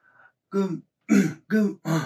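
A man's voice: four short spoken syllables beginning about half a second in, the unclear start of a read-out greeting.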